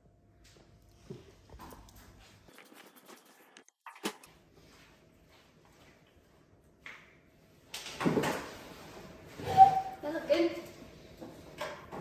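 Near-quiet room with faint clicks and one sharp knock about four seconds in; from about eight seconds in, indistinct voices with knocks and clatter.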